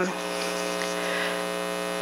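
Steady electrical mains hum in the sound system, a buzz with a long stack of even overtones, with a faint steady high-pitched whine above it.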